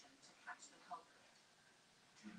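Near silence, with two faint, brief blips about half a second and a second in.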